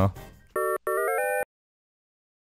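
A short electronic transition jingle: one brief held chord, then a quick run of beeping notes stepping upward in pitch, cut off abruptly.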